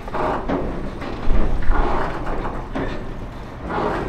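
Loose metal pieces hanging off the end of a pier clanging and scraping as waves move them, in about four irregular bursts, the loudest about a second in over a low rumble.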